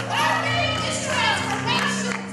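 A woman singing a gospel song into a microphone with long, sliding notes, over steady held accompaniment chords.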